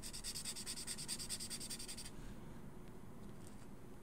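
Faint rubbing of a Faber-Castell Pitt artist brush pen's brush tip on sketchbook paper as marks are swatched. For about the first two seconds there is a fast, even ticking hiss, which stops abruptly.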